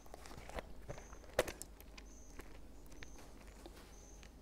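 Faint, scattered taps and clicks of hands handling something while looking down, the loudest about one and a half seconds in, over quiet room tone.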